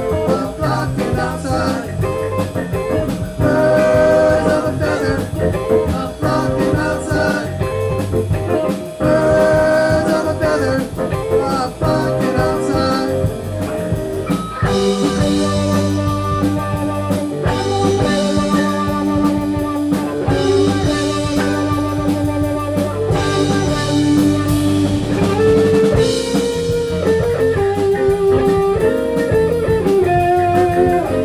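Live band playing electric guitars, bass guitar and drum kit. About halfway through the sound grows fuller and brighter.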